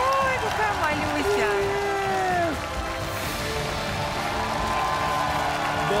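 Several voices giving long, drawn-out exclamations over steady background music, with some light applause underneath.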